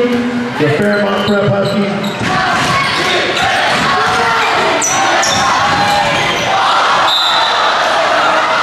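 Basketball being dribbled on a gym floor under the steady noise of a large crowd echoing in a high school gymnasium, with voices and a laugh near the start.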